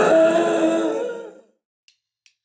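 A man's drawn-out groan, fading away about a second and a half in, leaving silence.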